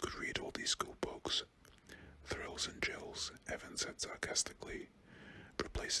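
A man whispering, reading a story aloud, with crisp hissing sibilants.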